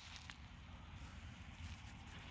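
Faint outdoor background noise with a low, even rumble: near silence between remarks.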